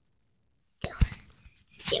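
Dead silence for most of a second, then rustling handling noise with one sharp low thump about a second in. A whispered word follows near the end.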